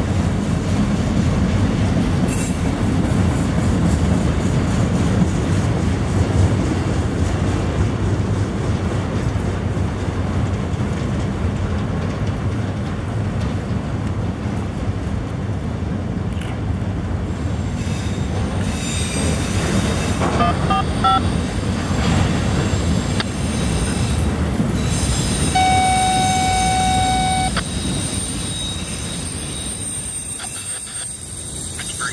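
Autorack freight cars rolling past, a steady rumble and rattle of steel wheels on the rail. Near the end a steady high tone sounds for about two seconds, and the rumble fades as the last car clears.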